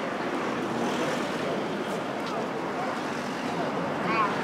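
Steady busy-street noise: road traffic running alongside a crowded sidewalk, with faint voices of passers-by.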